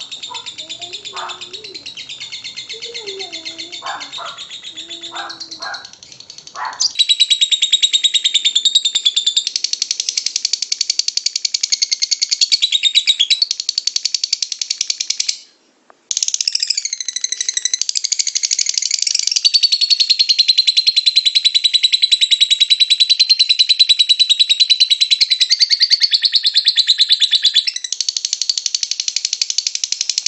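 A lovebird giving its long 'ngekek' chatter: a very fast, unbroken, high-pitched trill. It grows much louder about seven seconds in, breaks off for about half a second midway, then carries on loud.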